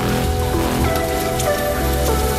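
Egg frying in hot oil in a wok, a steady sizzle, with background music over it.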